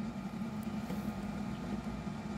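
Steady low mechanical hum of background room noise.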